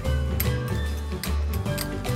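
Background music with a steady bass line, over several light clinks of metal spoons against a glass bowl as chopped chickpeas and vegetables are stirred.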